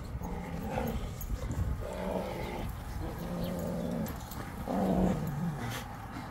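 Two Rottweilers play-growling as they wrestle: about four low, rough growls, each half a second to a second long, a second or so apart.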